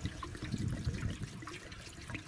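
Fuel being poured from a spouted can into the top-mounted tank of a 1937 Evinrude outboard motor, an uneven liquid pour.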